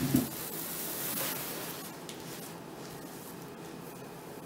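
A thump right at the start, then rustling and hissing as hair that has caught fire on a candle is patted and rubbed out by hand against a leather jacket. The noise fades after about two seconds.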